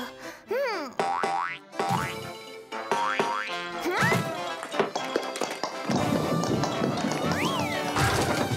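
Playful cartoon score with springy, sliding 'boing'-like sound effects, and a short wordless vocal sound near the start.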